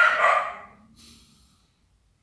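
A dog barking once, a short loud bark of about half a second.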